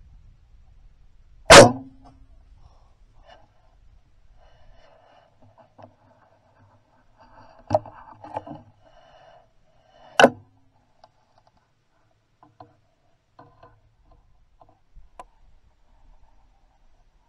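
A bow shot: one sharp, loud snap of the released string about one and a half seconds in, with a short low hum after it. Later comes quieter rustling and clicking as another arrow is nocked, with a second sharp click about ten seconds in.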